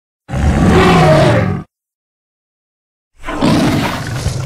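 Tarbosaurus roar sound effect, heard twice. The first roar lasts about a second and a half and starts just after the opening. The second begins about three seconds in, after dead silence, and carries on past the end.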